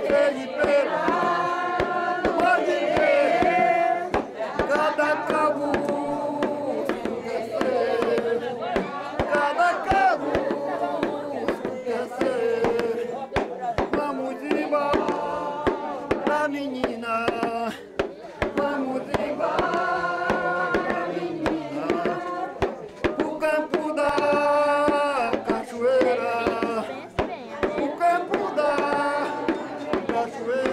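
Several voices singing a devotional chant of the Dança de São Gonçalo in repeated phrases, with guitar accompaniment.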